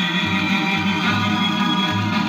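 A 1950s doo-wop 78 rpm shellac record playing on a record player. The lead voice is mostly out, leaving sustained chords over a pulsing bass line.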